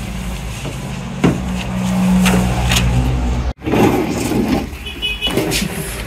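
A motor vehicle's engine running close by, a steady low drone, broken off by a sudden cut about three and a half seconds in.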